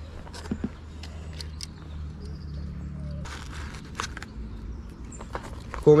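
Handling noise as a small caught perch is carried over cobblestones and laid on a measuring mat: footsteps, scattered light clicks and knocks of gear, and a louder rustle about three seconds in, over a low steady rumble.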